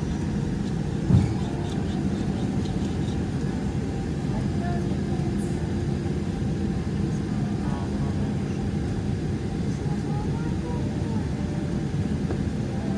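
Airliner cabin noise while taxiing after landing: a steady low rumble of the engines and airflow, with one sharp thump about a second in.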